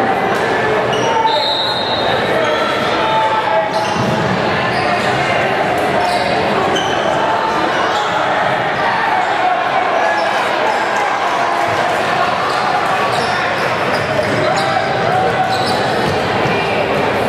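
Basketball being dribbled on a hardwood gym floor, with short high-pitched sneaker squeaks, over steady crowd chatter echoing in the gymnasium.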